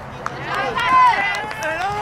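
Several voices shouting over one another. The loudest is a long, high shout about a second in.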